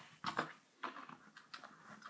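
A few faint, brief handling noises as a fuel hose is pulled out of the fittings on an alcohol stove and its fuel reservoir.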